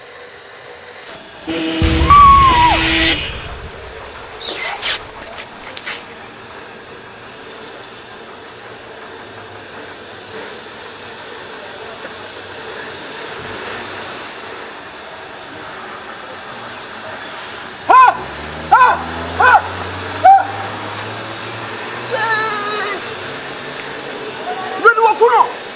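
A staged road accident: a car horn and a loud crash about two seconds in, then background music. Near the end a person cries out in short, wailing cries.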